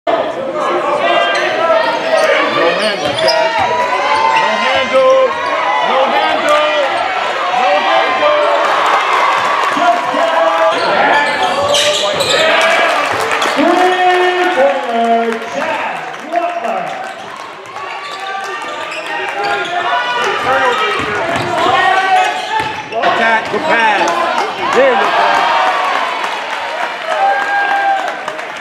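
Basketball game sound in a gym: the ball bouncing on the hardwood court amid players' and spectators' voices echoing in the hall.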